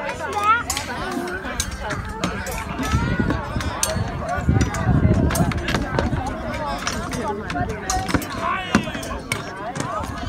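Irregular wooden clacks and knocks of reenactors' weapons striking round wooden shields in a staged Viking battle, over a constant din of voices and shouts, busiest around the middle.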